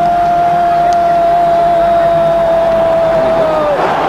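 A man's long, drawn-out goal shout: one high note held for about four seconds, sagging slightly and dropping off just before the end.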